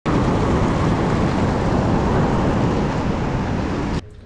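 Sea surf breaking and washing up over a sandy beach: a loud, steady roar of waves.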